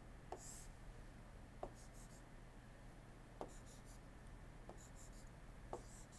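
Faint stylus writing on a tablet screen: about five light taps spaced roughly a second apart, with short scratchy pen strokes between them, over a low steady hum.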